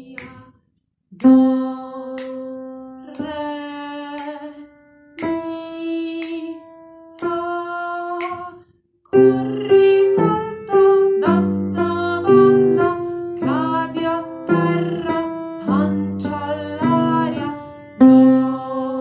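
A woman singing a simple children's song slowly with keyboard accompaniment. It opens with four long held notes climbing step by step, do-re-mi-fa. About nine seconds in, the melody carries on at a livelier pace over a bass line.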